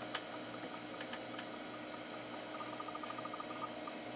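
A small hard drive running during a low-level format and disk speed test: a faint steady hum with a few sharp clicks of the heads seeking in the first second and a half, then a short run of rapid ticks past the middle.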